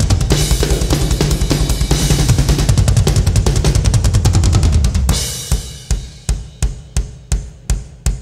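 Drum solo on a Tama rock drum kit: fast, dense playing of bass drums, snare and cymbals. About five seconds in, it thins to a steady beat of single low drum strokes, about three a second.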